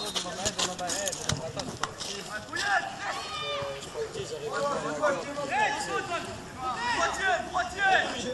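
Several voices shouting and calling out across a football pitch during play, overlapping and unclear. A few sharp knocks sound in the first two seconds.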